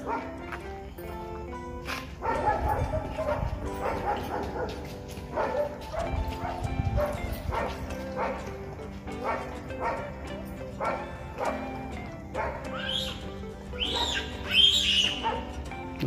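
Background music plays under the scene, and a dog barks and yelps several times near the end.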